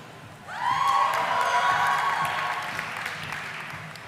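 Audience applauding and cheering for a graduate, rising about half a second in with a few shouted cheers and slowly dying away.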